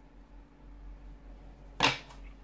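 Faint handling of tarot cards, then one short, sharp swish near the end as a hand sweeps across the laid-out cards.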